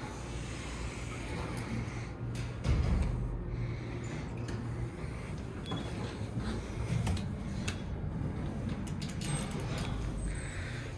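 Footsteps and a few soft clicks and thumps over a low steady hum as someone walks into an elevator car; a low thump about three seconds in is the loudest.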